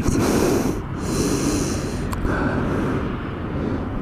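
Wind rumbling on the microphone, with two breaths close to the mic in the first two seconds.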